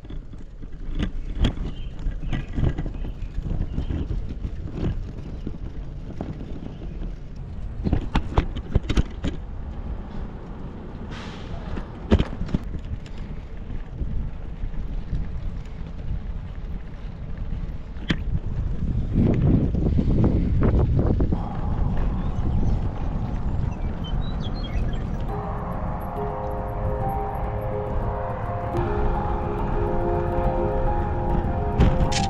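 Wind rumbling on the microphone and the rattle of a bicycle on the road, with frequent sharp clicks and knocks. Background music with steady notes comes in about 25 seconds in.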